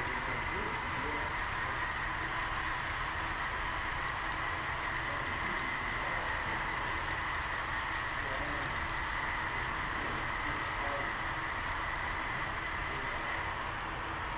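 Model freight cars rolling past on the track: a steady whirring hum of metal wheels on rail, with a constant high whine, that eases off near the end as the last car goes by.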